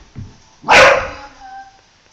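A dog gives one loud, short bark about two-thirds of a second in: an excited play bark while it pounces on an orange peel.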